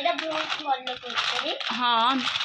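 Plastic snack packet crinkling and rustling as it is handled and shaken, with a child's voice between the rustles.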